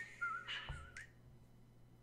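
A person whistling a few short, wavering notes, stopping about a second in.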